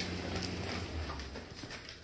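European Doberman Pinscher eating dry kibble from a bowl: a run of short crunches and clicks as it chews and its muzzle knocks the bowl.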